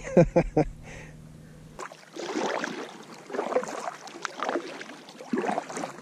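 Water splashing and sloshing around a kayak as it is paddled across a lake, in uneven surges.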